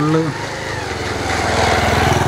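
A motorcycle engine running as the bike approaches, its steady rapid firing growing gradually louder.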